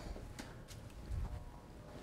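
Faint footsteps on a hard floor, with a few light clicks and knocks.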